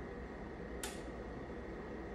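A bench power supply's voltage knob being turned by hand: one small, sharp click a little under a second in, over a low steady background hum.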